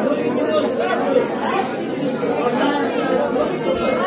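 A room full of people praying aloud all at once, many overlapping voices in a steady babble.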